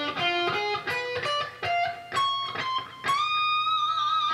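Overdriven electric guitar, a Squier Bullet Stratocaster tuned down a semitone, playing a fast diminished run that climbs note by note up the neck. It ends about three seconds in on a long high note bent up and held with vibrato.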